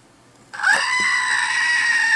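A screaming-goat novelty figurine letting out one long, loud goat scream that starts about half a second in and holds a steady pitch.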